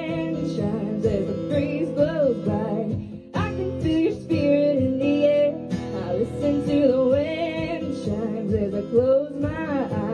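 A woman singing a slow folk ballad live, accompanied by strummed and picked acoustic guitars; the line sung is "I listen to the wind chimes as the breeze blows by... as I close my eyes".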